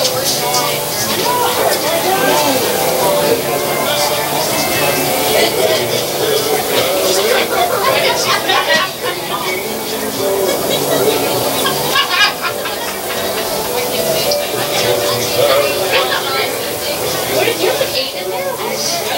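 Indistinct talk and chatter from spectators close to the microphone, several voices overlapping, with a sharp knock about twelve seconds in.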